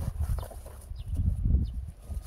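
Footsteps in rubber boots tramping through a dense stand of leafy weeds, heard as irregular low thumps and rumbling with the brush of plants against the legs.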